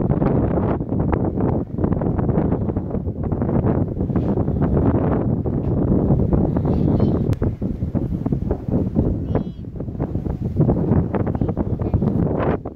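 Wind blowing across the microphone, loud and gusty.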